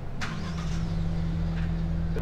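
A motor vehicle's engine running steadily with a low hum, its pitch dipping slightly just after the start.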